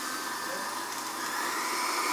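Braun countertop blender running steadily, blending a liquid base of milk, sweetener and glucomannan (konjac) powder so the thickener disperses.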